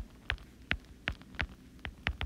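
Stylus tip tapping on an iPad's glass screen while handwriting: a series of light, sharp clicks, about two or three a second.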